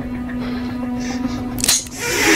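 Tense film score holding one low note. A short, sharp click comes about three-quarters of the way through.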